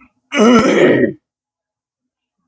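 A man's short, loud non-speech vocal sound, a throat-clear or chuckle lasting about a second, then silence.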